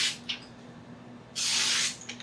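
Imarku 8-inch chef's knife slicing through a sheet of paper held in the air: a brief cut early on and a longer, half-second cut past the middle, each a smooth rush of paper noise. The cut goes cleanly, a sign of a sharp edge.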